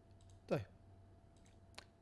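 A short vocal sound from a man falls steeply in pitch about half a second in, like a brief 'hmm'. A single sharp click follows near the end.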